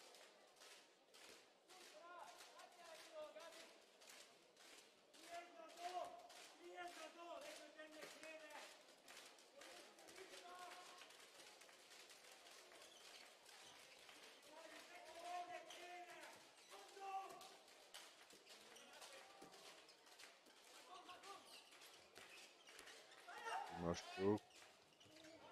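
Faint sports-hall sound of a handball game: a ball bouncing on the court floor in a run of short knocks, with players' voices calling out faintly now and then.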